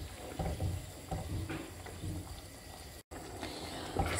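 Wooden spoon stirring simmering risotto in a granite-effect pan: soft, irregular scrapes and low bubbling. There is a brief dropout to silence about three seconds in.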